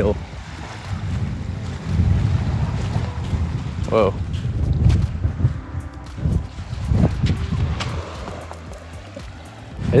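Wind buffeting the microphone, an uneven low rumble that rises and falls in gusts, over faint surf; a person says "whoa" about four seconds in.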